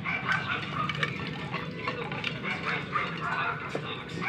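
Puppies making short, high whines and squeaks, several each second, over a steady low hum.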